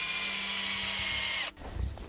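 Cordless drill running steadily with a high whine, spinning to twist the wire that holds a branch down to the tree trunk; it stops abruptly about one and a half seconds in.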